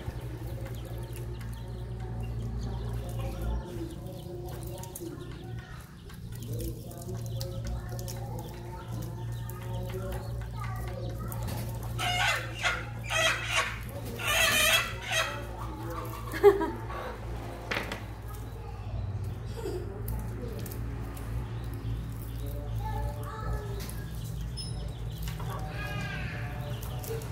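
Chickens clucking, with a louder run of calls about halfway through, over a steady low hum.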